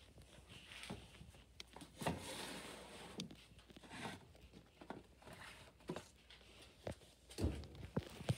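Handling noise: scattered light knocks and clicks, with a stretch of rustling about two seconds in and a sharper knock near the end, as a handheld phone is moved among plastic-wrapped detergent packages.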